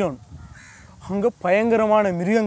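A crow cawing faintly once in a pause about half a second in, between phrases of a man's storytelling voice, which returns after about a second.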